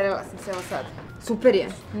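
A woman speaking.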